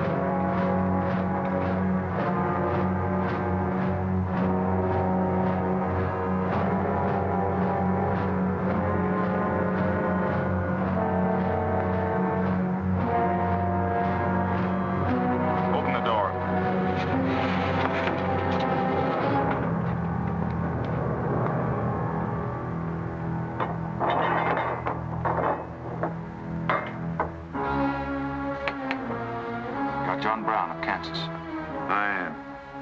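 Tense orchestral film score: sustained low notes under shifting higher lines, changing and thinning after about two-thirds of the way through, with a cluster of sharp hits near the end.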